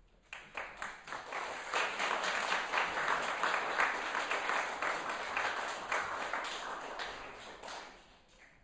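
Audience applauding. It starts suddenly, swells over the first two seconds or so, then thins out and dies away just before the end.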